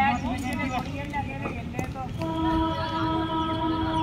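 Voices in the first half, then a long, steady horn-like tone, one held pitch with overtones, starting about halfway through and still sounding at the end.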